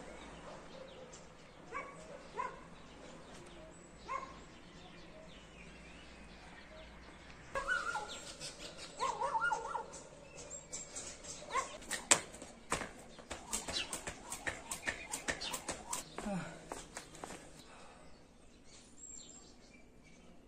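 A dog barking a few times, faint at first and more often from about eight seconds in. In the second half there is a run of sharp clicks or taps.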